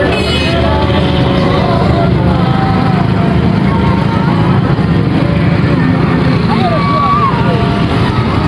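Many motorcycle and motor-rickshaw engines running steadily as a column of them passes close by, with people's voices calling out over the engine noise.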